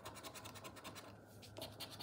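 Faint scratching of a plastic poker chip's edge scraping the coating off a paper scratchcard, in a fast run of short strokes.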